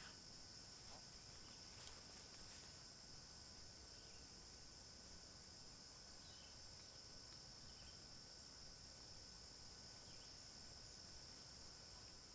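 Near silence, with a faint, steady, high-pitched insect chorus running throughout and a few faint clicks and chirps over it.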